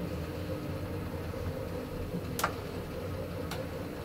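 Traction elevator car travelling in its shaft, with a steady low hum. A sharp click sounds about two and a half seconds in and a fainter one about a second later.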